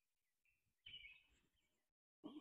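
Near silence, with a few faint short bird chirps. The clearest comes about a second in.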